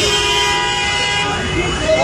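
A vehicle horn held down for about a second and a half, one steady blaring tone that then stops, over men shouting in a scuffle.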